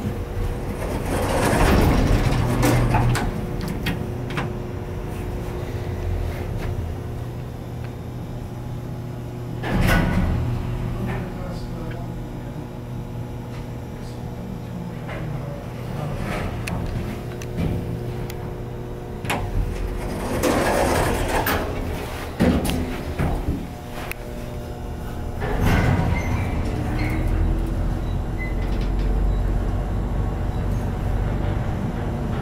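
Inside the car of a 1973 Otis traction elevator: the sliding car doors close in the first few seconds, then the car runs with a steady low hum, broken by a few louder swells of noise and scattered clicks.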